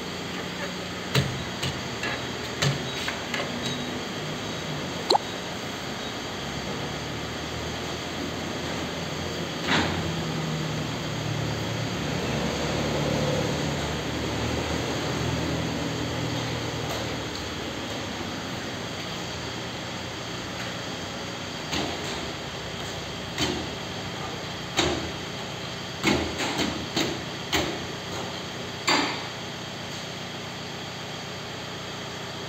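Sharp metallic clicks and knocks of wheel-alignment clamps and targets being fitted to a car's wheels, clustered near the start and again over the last several seconds. A low steady hum swells through the middle.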